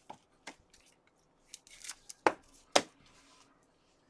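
Trading cards handled with gloved hands: cards sliding and tapping against each other and the table, with scattered sharp clicks, the two loudest a little past the middle.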